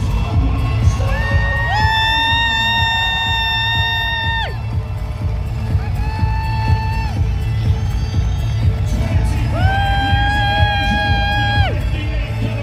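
Loud arena music over the PA with a heavy bass and long, held high notes, three times: one of about three seconds from two seconds in, a short one about six seconds in, and another from about ten seconds in. A crowd cheers underneath.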